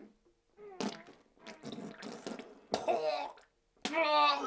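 A man sobbing in short, choking bursts with gasping breaths between them, growing louder near the end.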